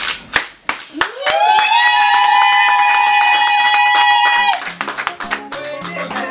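Scattered hand clapping, then a long high note that slides up and is held for about three seconds while the clapping goes on; near the end a song with a bass line and plucked guitar-like notes starts.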